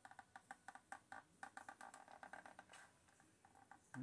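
Faint rapid clicking, about five clicks a second, from a cordless hot glue gun's trigger being squeezed to feed the glue stick as glue is laid on. The clicking stops about three seconds in.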